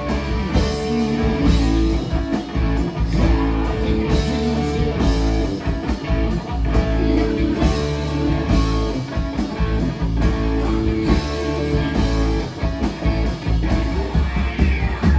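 Live rock band playing an instrumental passage: electric guitar out front over keyboard, with a steady beat and no singing.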